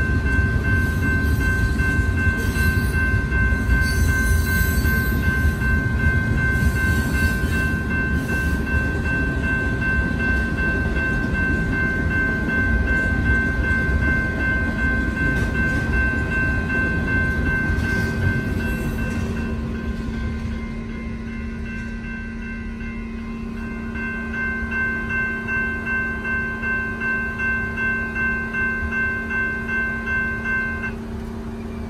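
Amtrak bi-level passenger train rolling slowly along the tracks with a low rumble that fades away after about twenty seconds, while the grade-crossing bell rings steadily throughout; once the rumble dies down the bell's rhythmic strokes stand out.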